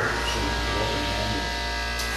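Steady electrical buzz: a low hum under several higher steady tones, starting abruptly and holding at an even level.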